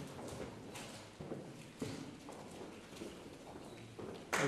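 Faint hall ambience with a few scattered footsteps on a wooden floor, irregular light knocks about half a second apart.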